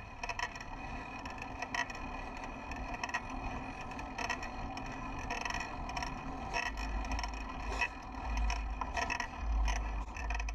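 Fixed-gear bicycle squeaking over and over as it is pedalled uphill. In the last few seconds, wind rumbles on the microphone.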